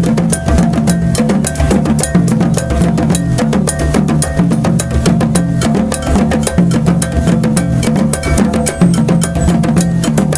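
West African drum ensemble playing a fast, steady rhythm: djembes slapped and struck by hand over dundun bass drums beaten with sticks, with a metal bell mounted on a dundun ringing out the timeline.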